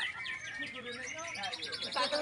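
White-rumped shamas (murai batu) in contest cages singing rapid, repeated high trills, over crowd voices.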